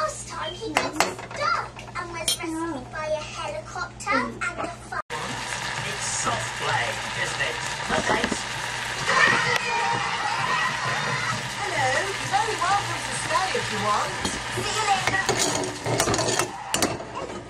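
A spoon stirring and scraping butter and minced garlic in a metal pot, with sharp clicks of the utensil against the pan. After a sudden break about five seconds in, a steady sizzle from the bubbling butter sauce follows, with children's voices faint in the background.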